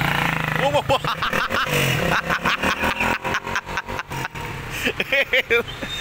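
A small underbone motorcycle engine running as the bike pulls away, fading after about two seconds. Short exclamations are heard over it, and there is irregular crackling in the middle.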